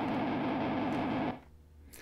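Kemper Profiler's profiling test signal played through a distorted Marshall JMP-1 preamp rig: a harsh, rapidly warbling buzz that cuts off suddenly about two-thirds of the way through, as the profiling finishes.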